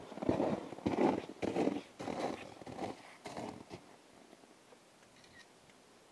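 Men's voices laughing and talking in short bursts, dying away about four seconds in.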